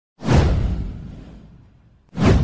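Intro whoosh sound effect with a deep low boom underneath. It swells quickly a fraction of a second in and fades away over about a second and a half.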